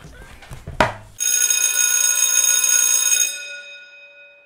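A sharp knock about a second in, then a bright bell ringing for about two seconds and dying away.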